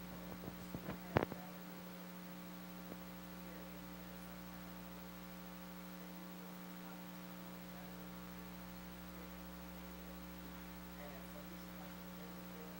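Steady electrical mains hum in the recording, a constant drone made of several fixed tones. A couple of small sharp knocks come about a second in.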